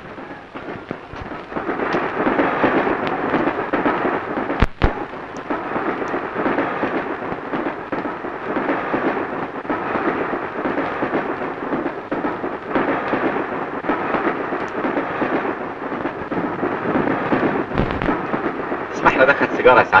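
Railway passenger carriage running, a steady rumble of wheels on the track with faint repeated clatter and a sharp knock about five seconds in.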